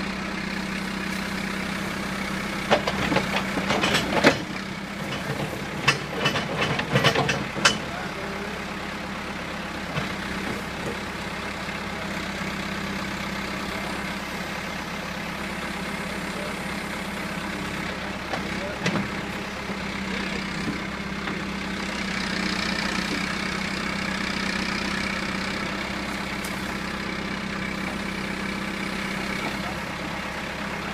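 John Deere 310 backhoe loader's diesel engine running steadily, with a run of sharp clanks and knocks from about three to eight seconds in and one more just before the middle. The engine note grows brighter and a little louder for a few seconds in the last third while the backhoe arm is worked.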